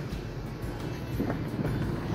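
Steady low background noise, an even hiss with no distinct event in it.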